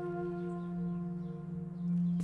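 Background score: a sustained drone of several steady held tones, swelling slightly near the end.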